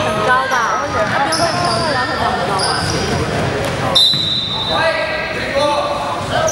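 Basketball game in a gym: the ball bouncing on the hardwood floor, short high sneaker squeaks (a loud one about four seconds in), and voices echoing in the hall.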